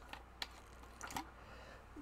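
A few faint, scattered clicks from a clear plastic water bottle being handled.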